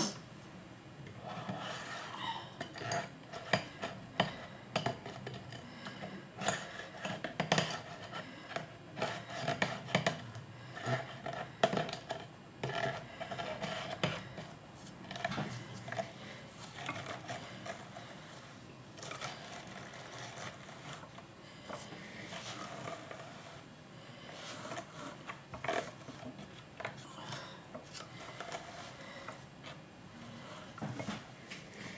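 Ashford wooden drum carder at work as fleece is fed and pressed onto its toothed drums: a dry rasping and scraping of the carding teeth through the wool, with many irregular light knocks, busiest in the first half.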